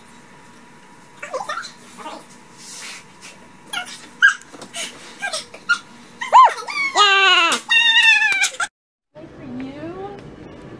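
High-pitched whimpering cries: several short ones scattered through the first seconds, a rise-and-fall cry about six seconds in, then two long wavering cries, the loudest, that cut off abruptly near the end.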